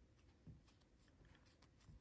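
Near silence, with a few faint rustles and small ticks of fine crochet thread being worked with a steel hook.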